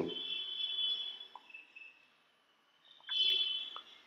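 High-pitched steady whine of an ultrasonic endodontic tip activating irrigant in a root canal, in two stretches: about two seconds, then a shorter spell near the end.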